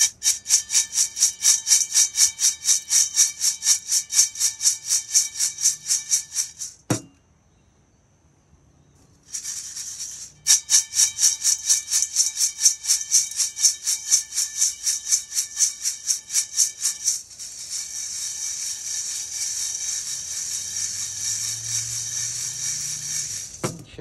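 Freshly roasted coffee beans rattling in a stainless steel colander as it is tossed about five times a second to cool them evenly, the metal ringing with each toss. The shaking stops for about two seconds around seven seconds in, resumes, and later turns into a continuous swirling rattle.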